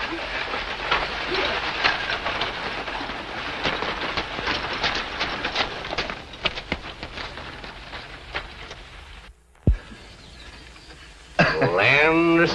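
Several horses' hooves clattering over rocky, brushy ground: a dense run of irregular knocks over a steady hiss. It cuts off suddenly about nine seconds in.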